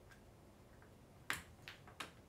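A sharp click a little past halfway, then a fainter click shortly after, over quiet room tone.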